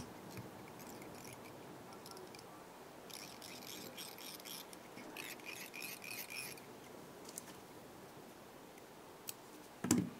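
Faint scratchy rustling of fly-tying thread being wound from a bobbin onto a small hook held in a vise, in two short stretches, with a single sharp click near the end.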